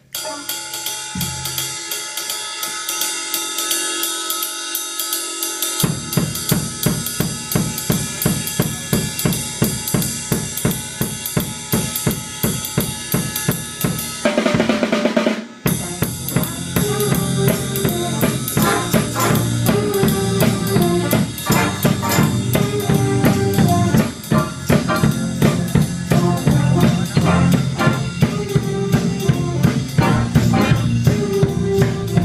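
School jazz band playing, with the drum kit's snare, bass drum and cymbals driving a steady beat under saxophones. Low bass notes join about six seconds in, and around the middle the drums stop briefly under a short held chord before the beat resumes.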